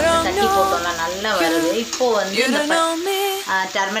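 Onions, potatoes and chickpeas frying with a sizzle in an aluminium kadai while a steel spoon stirs them, with a person's voice over it.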